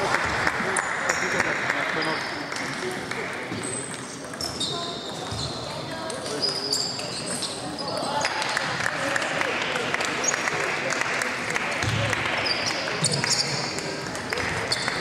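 Table tennis rallies: the ball clicking in quick, irregular succession off bats and table tops, quieter for a few seconds in the middle.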